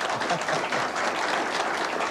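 Studio audience applauding steadily, mixed with some laughter.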